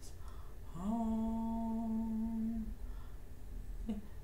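A woman singing a slow, wordless tune, holding one long, steady note from about a second in, with a short note near the end.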